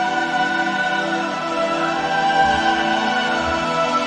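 Choral music: voices hold long notes in slow-moving chords.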